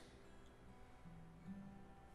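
Faint, soft acoustic guitar notes ringing, with a new note picked about one and a half seconds in.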